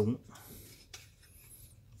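Faint rubbing and scraping of plastic toy parts being handled and fitted together, a transforming robot figure being assembled by hand.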